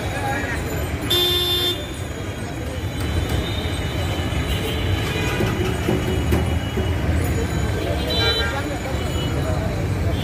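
Busy street traffic with a steady engine rumble. A vehicle horn toots for about half a second about a second in, and another horn sounds briefly near the end.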